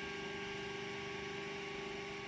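Ender-3 3D printer's stepper motors energised, giving a steady electrical hum of several tones.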